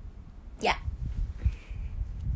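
A woman's brief vocal squeak about half a second in, falling quickly in pitch from very high to low.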